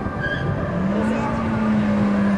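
Car engine revving up about a second in and held high and steady as the car launches off a drag-strip start line.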